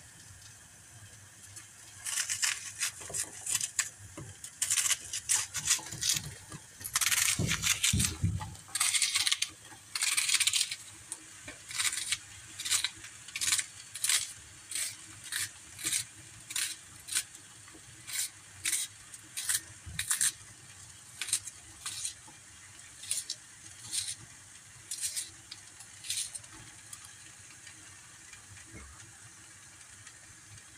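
Kitchen knife cutting an onion held in the hand over a stainless steel pot, with chopped onion pieces dropping into the pot: a run of short, crisp cuts, busier in the first third and then a little over one a second.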